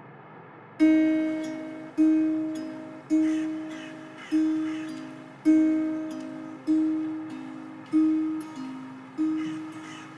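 Acoustic guitar picking a slow figure. It begins about a second in, with eight plucked notes roughly a second apart, each left to ring and fade before the next.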